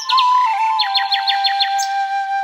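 Calm instrumental background music with a sustained flute-like melody, layered with bird chirps. There are two chirps at the start and a quick series of about seven chirps in the middle.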